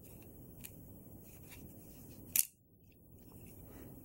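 Faint handling of a small hard plastic toy accessory, an action figure's clamp weapon, turned over in the hands with a few small clicks and one sharper plastic click about two and a half seconds in.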